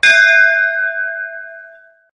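A bell struck once, its ringing tone fading away over about two seconds.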